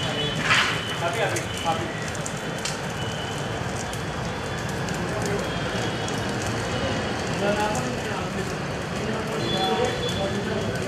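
Burning wooden funeral pyre crackling steadily, with indistinct voices of people around it.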